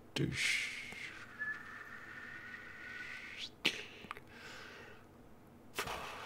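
A man whistles one long note: a breathy rush, then a pitch that dips slightly and holds for about three seconds. A sharp click follows.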